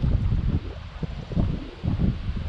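Wind buffeting the microphone: an uneven, gusty low rumble that swells and drops several times.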